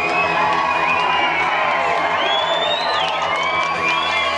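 Live crowd cheering and whooping, with high rising and falling shouts over the band's music.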